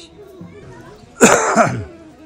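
A single loud, rough cough about a second in, lasting about half a second.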